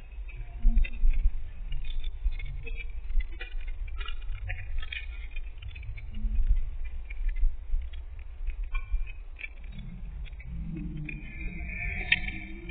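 Wind buffeting a phone's microphone as a low, uneven rumble, with scattered small clicks.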